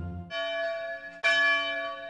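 A large church bell tolling, struck twice about a second apart, each stroke ringing on and slowly dying away.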